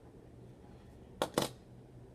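Die-cast toy cars clacking as they are handled: two quick light clicks about a fifth of a second apart, a little over a second in.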